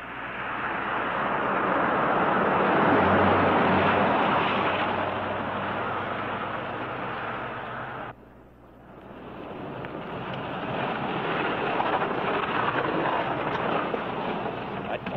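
Surf breaking on a beach: a rushing swell that builds over a few seconds and slowly fades, breaks off sharply about eight seconds in, then builds again.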